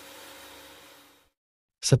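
Pressure-washer jet spraying water onto the condenser coil fins of an air-conditioner outdoor unit during cleaning: a steady hiss with a faint hum under it, fading out about a second in.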